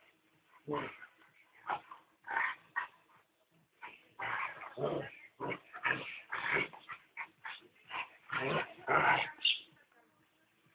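Slovak Cuvac dogs, an adult and a puppy, vocalising as they play-fight: a series of short, rough sounds, coming thicker and louder in the second half.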